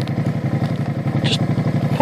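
Motorcycle engine idling with a quick, even pulse, the bike stopped at the roadside. A brief hiss sounds just over a second in.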